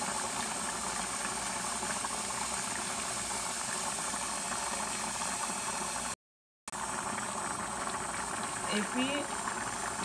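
Pot of rice and black beans at a steady rolling boil, bubbling and hissing evenly. The sound cuts out completely for about half a second around six seconds in.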